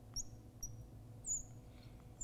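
Marker squeaking on a glass lightboard while writing: three short, high squeaks, the last and loudest about a second and a half in.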